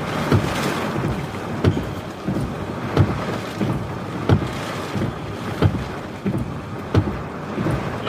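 Heavy rain pouring down, with wind buffeting the microphone. A low thump repeats steadily, about every second and a third.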